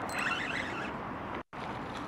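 Wind noise on the microphone and water moving around a small boat, a steady hiss that cuts out for an instant about one and a half seconds in.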